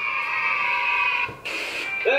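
Steady electronic tone, several high pitches held together, from the compilation's title card. It breaks off about one and a half seconds in and is followed by a brief high hiss.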